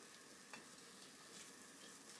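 Faint sizzling of egg frying in a pan, with a single light click about half a second in.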